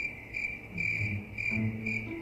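Cricket chirping: short, high, evenly repeated chirps, about two or three a second.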